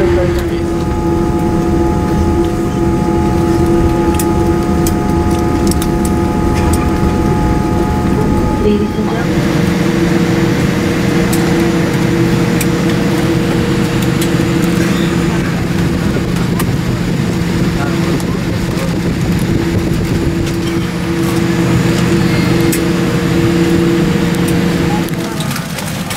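Boeing 787 cabin noise while taxiing after landing: the engines idling with steady humming tones. A set of higher tones stops about nine seconds in, and a brighter, rushing noise carries on after.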